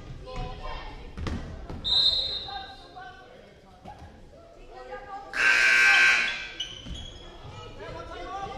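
Basketball dribbling and voices echoing in a gym. About two seconds in, a short high referee's whistle stops play. Later, from about five and a half seconds, a louder, noisier sound lasts about a second.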